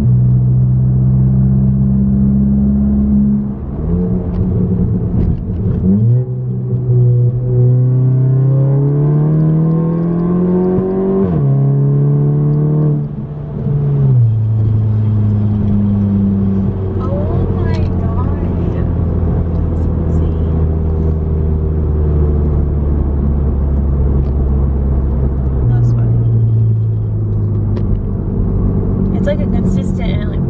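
Turbocharged VW Golf GTI four-cylinder engine heard from inside the cabin while driving. The pitch climbs for several seconds under acceleration and drops sharply at two gear changes a few seconds apart. It then holds steady for a long cruising stretch before stepping up in pitch near the end.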